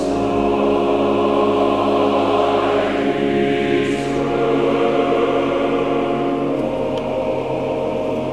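Church choir singing a choral anthem in long, held chords.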